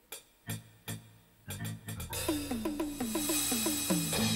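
A piano and electric guitar jazz duo starting a tune. A few isolated knocks come first, then about a second and a half in the music enters with a repeated figure of falling notes, about four a second, and a steady high hiss joins it.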